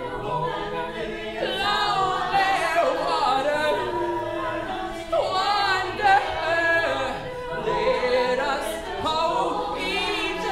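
Mixed-voice a cappella group singing: sustained chords from the backing voices under a male lead voice that bends and glides in pitch.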